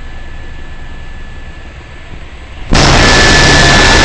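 Helicopter engine and rotor noise heard inside the cabin, steady, with a thin high whine. About two-thirds of the way in it jumps suddenly to a much louder, harsher, steady roar.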